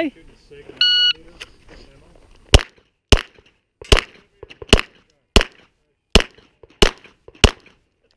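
Shot timer's start beep about a second in, then a semi-automatic pistol firing about eight shots in a steady string, roughly two-thirds of a second apart, at a timed USPSA stage.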